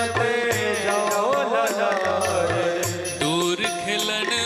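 A devotional Hindi bhajan: a man's voice singing a long, gliding melodic phrase over instrumental accompaniment, with a steady low drum beat about twice a second and bright high strikes.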